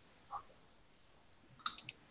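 Quiet room tone with a faint blip about a third of a second in, then a quick run of three or four small, sharp clicks near the end.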